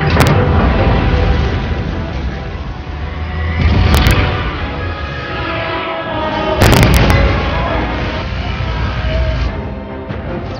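Blockbuster film soundtrack: orchestral score under a deep, continuous rumble, hit by three heavy booms, one just after the start, one about four seconds in and a doubled one about seven seconds in, as a huge energy beam fires.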